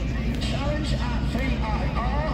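Indistinct chatter of spectators over a steady low rumble.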